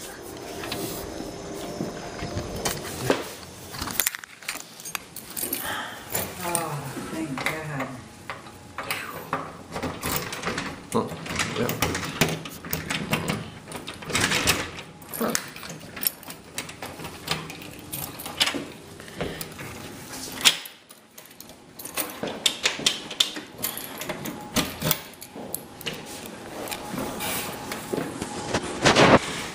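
Indistinct voices with a run of sharp clicks and knocks throughout, with a brief lull about two-thirds of the way in.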